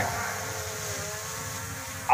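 A low, steady engine-like hum with a slight rise in pitch partway through.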